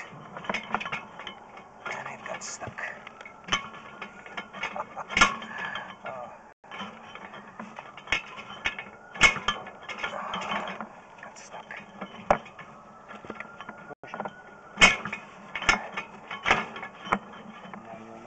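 Irregular clicks and knocks from a sewer inspection camera being worked inside a cast iron drain pipe, over a steady electrical hum.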